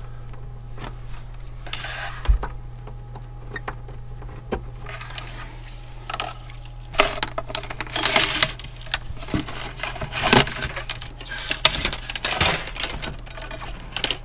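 Hands handling electrical wire and small parts inside a wooden cabinet: scattered light clicks and taps, then denser rustling and scraping over the second half, over a steady low hum.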